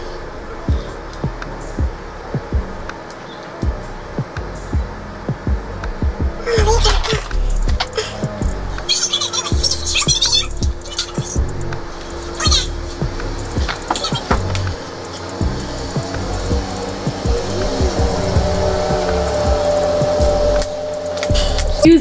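Street-cleaning vehicle passing outside, a low rumble with scattered knocks that grows louder in the last several seconds.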